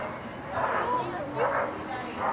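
Short shouts and calls from players and spectators across an open field, several in quick succession.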